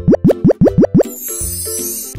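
Cartoon editing sound effects over cheerful background music: about six quick rising bloop-like pops in the first second, then a high sparkling shimmer.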